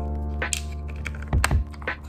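Small plastic pill case being handled: a few light clicks and taps as its hinged snap lid is worked and the case is set on the table, over background music.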